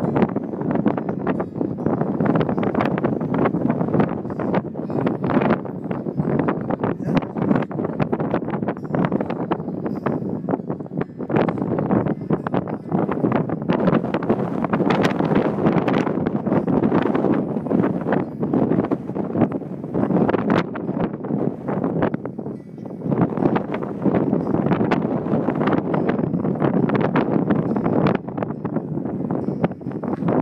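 Steel-string acoustic guitar strummed in repeated strokes, with heavy wind buffeting on the microphone.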